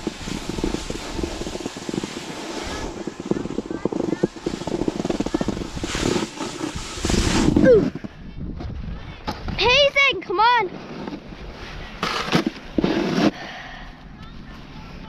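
Snowboard edge and base scraping over hard-packed, icy snow, with wind on the microphone, while riding downhill; the scraping eases off about eight seconds in. Then come two short vocal calls that rise and fall in pitch, and a brief scrape of the board shortly after.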